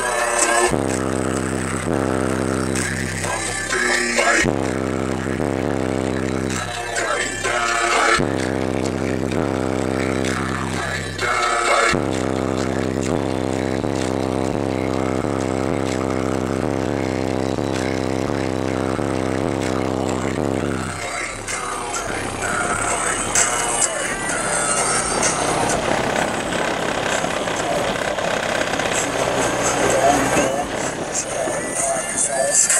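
Bass-heavy music playing loud through two custom 12-inch Sundown Audio ZV3 subwoofers on a Sundown SAZ-2500 amplifier, heard from inside the car. Long deep bass notes are held, with a short break every few seconds. About two-thirds of the way through, the deep bass drops back and the higher parts of the music take over.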